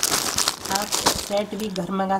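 Clear plastic packaging on a ladies' suit crinkling as it is handled and laid down, followed by a man's voice starting in the second half.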